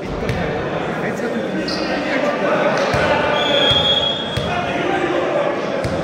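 Echoing chatter of players and spectators in a sports hall between volleyball rallies, with a few scattered thuds of a volleyball hitting the wooden floor. A short high referee's whistle sounds a little past the middle.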